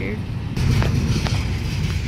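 Double-stack intermodal container train rolling past close by: a steady low rumble with a few sharp clicks and clanks from the passing cars.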